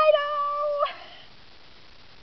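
A woman's high-pitched, drawn-out exclamation, the final vowel of "Potato!" held on one steady note for nearly a second and then cut off.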